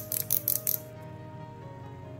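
Ratchet joints in the shoulders of a 1/6-scale action figure clicking as the arm is rotated: a quick run of about half a dozen sharp clicks in the first second, then they stop. The ratcheting is called weird, an odd feature of this figure's body.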